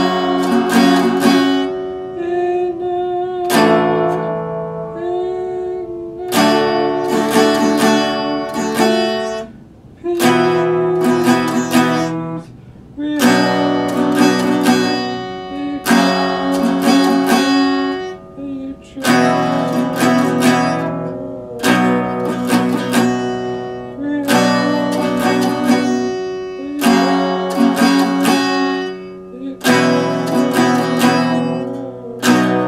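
Acoustic guitar played in chords, in phrases of a couple of seconds that ring and fade before the next begins, about one every three seconds.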